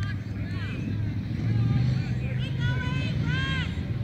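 High-pitched shouts and calls, mostly in the second half, over a steady low rumble.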